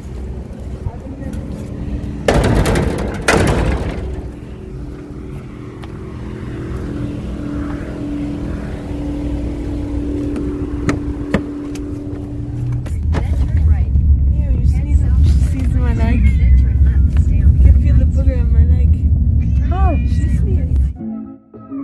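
A car engine idling with a steady hum, with a loud rushing burst a couple of seconds in. About two-thirds of the way through a heavy, deep rumble takes over as the car gets moving, with wavering higher calls over it near the end.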